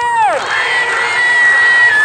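A long shouted call through a loudhailer falls away in pitch at the start, then a crowd of women shouts back together.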